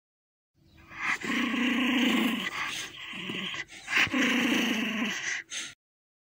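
A dog growling: two long growls with a short break between them, then a brief final snarl.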